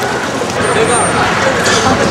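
Busy city street ambience: indistinct crowd chatter mixed with steady traffic noise.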